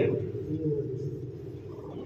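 A soft, steady low drone of several held tones as the voice trails off at the start.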